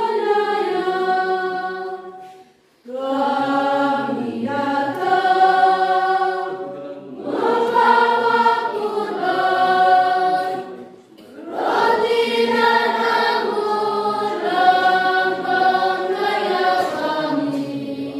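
Church congregation singing a hymn together without instrumental accompaniment, in long phrases with brief breaks between them.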